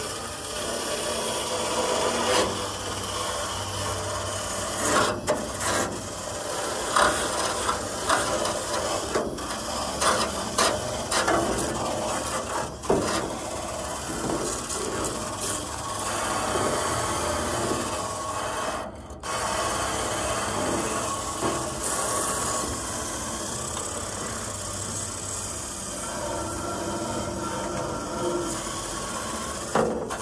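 Handheld power tool stripping paint from a rusty steel car fender: the motor hums steadily while the tool grinds and scrapes against the metal, with short scrapes and one brief pause about two-thirds of the way through.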